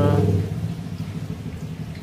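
A low, steady droning hum, loud for the first half second and then fainter.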